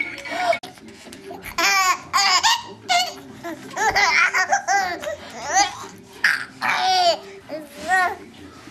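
A baby laughing in high-pitched squealing fits, about four bursts each lasting around a second.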